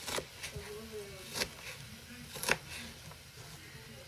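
Kitchen knife chopping onion on a plastic cutting board: a few separate knocks of the blade against the board, the loudest about one and a half and two and a half seconds in. Faint voices are in the background.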